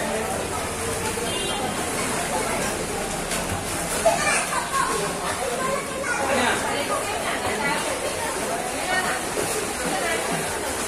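Children's voices calling and chattering over steady splashing as young swimmers kick through pool water, with a sharp splash or knock about four seconds in.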